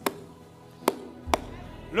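Three sharp knocks on a clear acrylic pulpit, unevenly spaced, struck like a judge's gavel to mark a verdict. Faint sustained background music runs under them.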